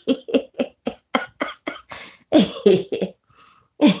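A woman laughing: a quick run of short breathy 'ha' pulses, then a few louder ones a little past two seconds in and again near the end.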